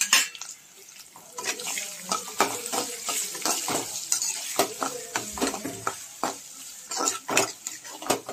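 Metal spatula scraping and clacking against a frying pan as chopped onions, curry leaves and green chillies are stirred and sautéed in sizzling oil. There are irregular clicks throughout, with the loudest clank right at the start.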